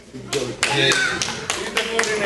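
Scattered hand claps from a few people, irregular and starting about a third of a second in, with voices talking over them.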